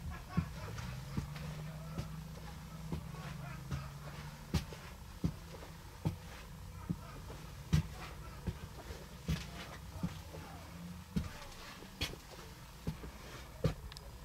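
Footsteps walking down the aisle of an MCI D4500 coach, a steady pace of a little more than one step a second, each step a sharp thump on the floor. A steady low hum runs underneath.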